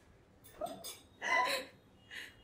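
A woman's short, breathy laughter: two brief bursts, the second louder, about a second in.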